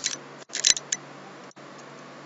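A sharp click at the start, then a quick run of three or four sharp clicks about half a second in, from the teacher working the computer while editing the code, over a steady low hiss.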